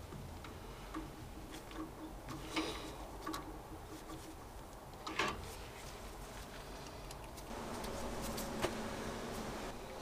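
Scattered light clicks and taps of a screwdriver and small metal parts as a freed-up part is refitted into the controls of an old Vaillant combi boiler. A faint steady hum comes in near the end.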